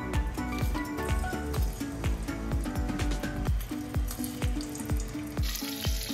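Sliced onions sizzling as they fry in hot oil in a pressure cooker, under background music with a steady beat.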